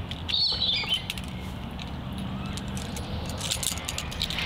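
Camp gear being handled: light clicks and clinks, with a brief high rattle about half a second in, over steady outdoor ambience.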